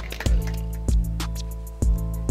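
Background music with a steady drum beat, regular hi-hat ticks and a held bass line.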